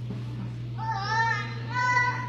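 A toddler wailing in distress: two high-pitched cries, the first about a second in with a wavering pitch, the second near the end held on one pitch. A steady low hum runs underneath.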